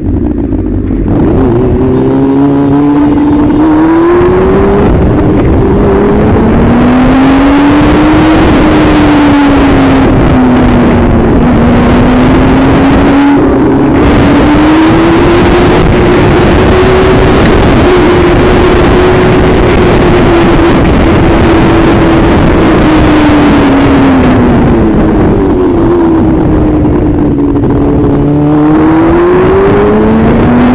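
Motorcycle engine running at speed under changing throttle, its pitch climbing through upshifts in the first few seconds and again near the end and rising and falling in between, over heavy wind noise on the microphone.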